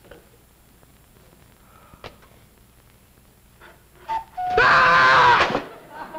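Faint ticking of a pendulum cuckoo clock, then two short descending notes of the clock's cuckoo call about four seconds in, followed at once by a loud blast of sound lasting about a second.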